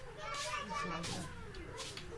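Faint background chatter of children's voices, wavering and indistinct.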